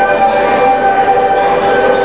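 Ensemble of recorders played by children holding a chord of several sustained notes in a reverberant rotunda; the notes stop together at the end.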